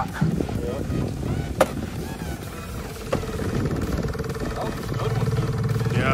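Small outboard motor running at trolling speed, a steady hum that grows a little stronger near the end, with a single sharp knock about a second and a half in.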